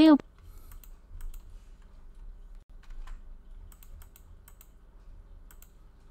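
Irregular light clicks of a computer keyboard and mouse, a few spread out and a quick run of them about four seconds in.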